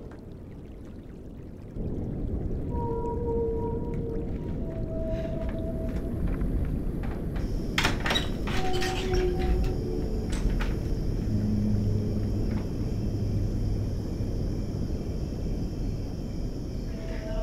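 Film sound design: a low rumbling drone starts about two seconds in, with long held tones that step from one pitch to another over it. A few sharp clicks of a door knob turning come about halfway through.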